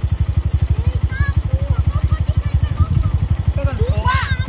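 Small motorcycle engine idling steadily close by, a rapid even low throb of about twelve beats a second, with faint voices over it.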